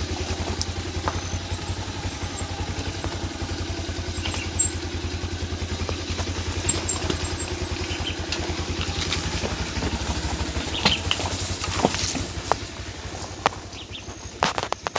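Motorcycle engine running steadily at low speed, with a few sharp knocks and rattles late on as the bike goes over loose stones; the engine gets a little quieter near the end.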